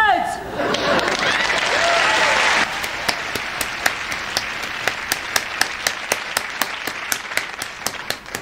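About two seconds of noisy laughter and applause, then one person clapping steadily, about four claps a second, for the rest of the time.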